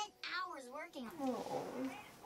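Cartoon dialogue playing from the TV, followed near the end by a rough, growl-like animal sound.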